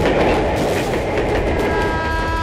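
A passing train's loud, steady running noise. About one and a half seconds in, a steady pitched tone with several overtones sets in over it.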